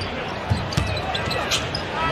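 Basketball dribbled on a hardwood court: a few low bounces over steady arena background noise.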